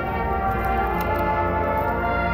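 Marching band playing, its brass holding steady sustained chords.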